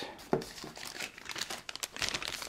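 Clear plastic parts bags crinkling as they are handled, a run of short irregular crackles.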